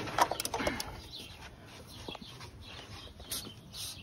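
Clicks and metal knocks from a half-inch wrench and 1-1/4 inch socket on a diesel engine's oil filter cap as it is broken loose, mostly in the first second.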